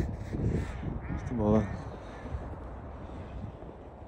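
A large bird gives one harsh call about a second in, lasting about half a second, over a steady low rumble of wind on the microphone.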